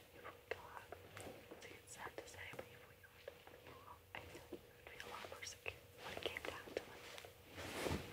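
Two people whispering quietly to each other in a small room, with scattered faint clicks and a faint steady hum underneath.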